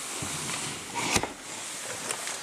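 Quiet fumbling and handling noise inside a car, with one sharp knock a little over a second in, as the camera is moved around.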